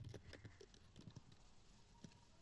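Near silence with a few faint, scattered computer keyboard keystrokes, mostly in the first second.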